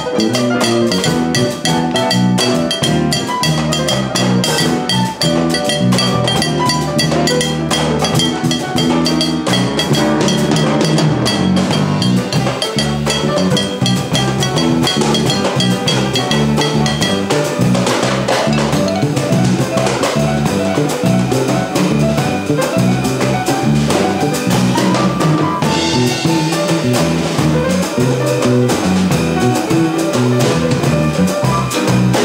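Instrumental passage by a small jazz band: piano chords and runs over drum kit and cajón percussion keeping up an Afro-Peruvian groove.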